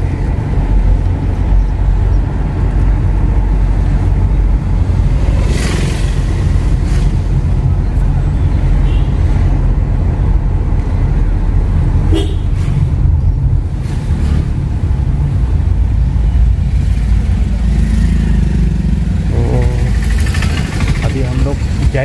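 Steady low rumble of engine and road noise inside a moving car's cabin, with a few short sharper sounds from the traffic along the way.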